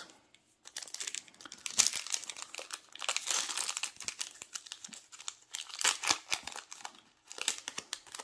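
A foil Yu-Gi-Oh booster pack wrapper being torn open and crinkled by hand: a dense run of crackling and tearing that starts about a second in and stops shortly before the end.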